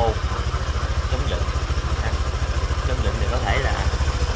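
Honda Vario 125 scooter's single-cylinder four-stroke engine idling steadily, an even low rumble.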